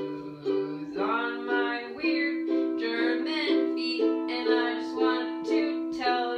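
A strummed string instrument playing chords in a steady rhythm, about two strums a second.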